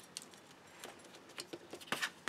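Faint, scattered ticks and light rustles of card stock and double-sided tape being handled on a cutting mat, a few small clicks spread across the two seconds.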